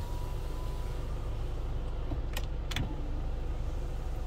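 Inside the cabin of a 2012 Hyundai Tucson with the engine running: a steady low hum, with two light clicks a little after halfway through.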